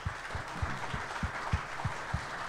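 Light applause from a small live audience, an even patter with a few soft low thumps scattered through it.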